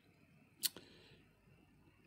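A single sharp click about two-thirds of a second in, followed by a few faint ticks, from fingers handling a small amplifier circuit board.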